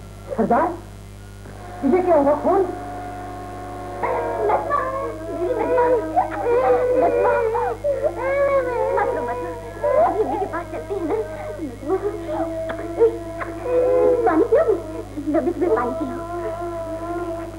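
Many children's voices crying and whimpering at once over film background music. It starts with a short outburst about half a second in and swells from about two seconds on, with a steady low hum from the old soundtrack underneath.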